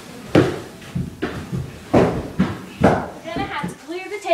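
Pillow fight: about four heavy thuds of pillow blows and booted feet on a wooden floor, roughly a second apart, then a high voice calling out near the end.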